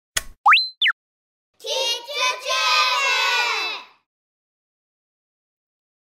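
A click and a cartoon sound effect whose pitch slides quickly up and then back down, followed by a high child's voice calling out for about two seconds, like a short spoken or sung intro.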